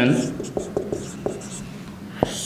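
Marker pen writing on a whiteboard: light ticks and faint squeaks of the felt tip, about four strokes a second, as a word is written out.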